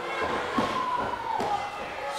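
Crowd noise in a wrestling hall, with a few thuds on the ring mat spaced under half a second apart, and a steady high tone held underneath.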